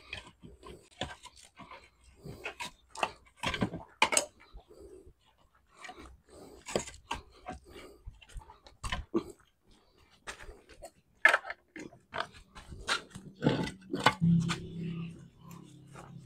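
Irregular clicks, knocks and rustling as a carpet-lined wooden speaker cabinet is pulled apart by hand, its felt lining and parts being handled. Near the end a low, drawn-out pitched sound comes in.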